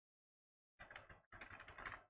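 Typing on a computer keyboard, a password being keyed in: two quick runs of keystrokes starting about a second in.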